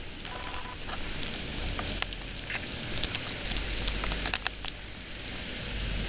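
Heavy rain drumming on a car's roof and windows, heard from inside the cabin: a steady hiss with scattered sharp taps of drops. A low rumble of the car rises about halfway through.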